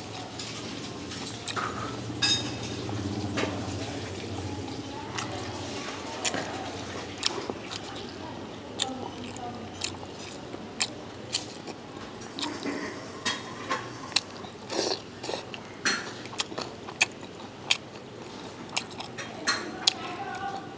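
Wooden chopsticks clicking and scraping against a ceramic bowl, with many short, sharp, irregular clicks over a low background hum that fades about two-thirds of the way through.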